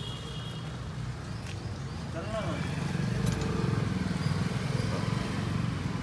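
A steady low rumble runs underneath, a little louder in the middle, with a few small clicks as a butane gas canister is fitted onto a handheld thermal fogger's gas connector.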